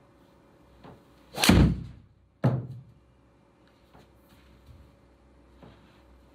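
A golf driver striking a ball off a mat into an indoor simulator screen, giving a loud thud about one and a half seconds in. A second, sharper knock follows about a second later.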